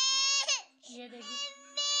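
Toddler crying hard: a long, high wail that breaks off with a falling sob about half a second in. Short catching breaths follow, then another long wail starts near the end.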